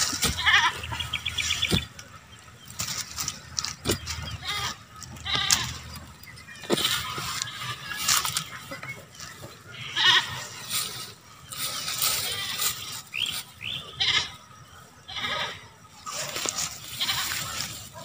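A goat bleating now and then, over irregular knocks of an iron digging bar being driven into the soil to dig up cassava roots.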